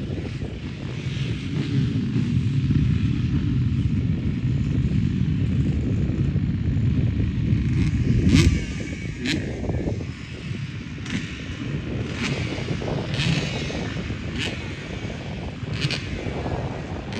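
Motocross bikes' engines running in the distance, a dense low rumble that builds to its loudest about halfway and then eases. From then on a series of short sharp clicks comes roughly once a second.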